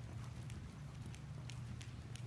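Hoofbeats of an Arabian gelding cantering on arena dirt, a few sharp strikes spaced unevenly, over a steady low hum.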